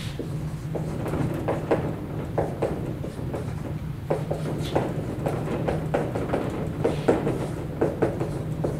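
Marker writing on a whiteboard: an irregular run of short taps and squeaks as letters are stroked out, over a steady low hum.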